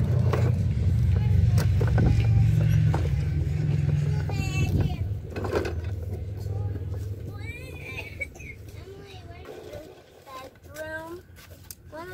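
Plastic toy bubble lawn mower's wheels rolling and rattling over brick patio pavers as a toddler pushes it; the rumble is loudest for the first few seconds, then dies away as the pushing stops.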